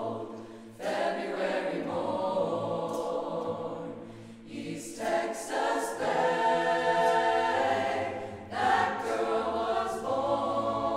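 Mixed choir of men's and women's voices singing a cappella in a stone church, in sustained phrases with brief breaks just after the start, near the middle and shortly before the end.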